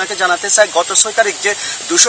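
A man speaking Bengali: continuous talk with no other sound standing out.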